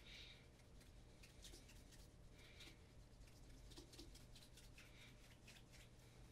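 Faint rubbing of a cloth over the leather upper of an Allen Edmonds Margate dress shoe, in short scratchy strokes.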